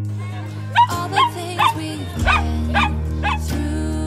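A dog barking about six times in quick succession, roughly two barks a second, over background music.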